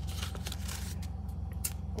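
Paper cards and journaling pages being handled by hand, with a few light rustles and clicks, over a steady low hum.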